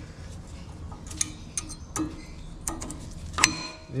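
Metal-backed brake pads clicking and clinking against the new metal pad clips as they are pushed into an Isuzu MU-X front caliper bracket: about five separate sharp clicks, the loudest near the end with a brief metallic ring.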